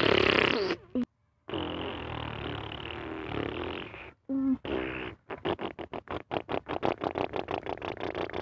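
A person making truck engine noises with the mouth: a loud blast at the start, a steady buzzing rumble for a few seconds, then a fast putter of about six pulses a second.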